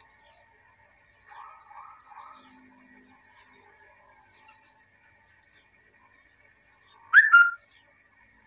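A bird's short, sharp two-note call near the end, the loudest sound, preceded about a second in by a few soft chirps, over a faint steady high-pitched background hum.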